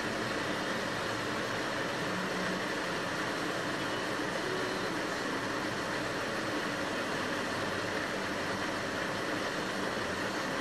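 Steady idling hum with an even rushing noise, heard inside the cab of a parked vehicle.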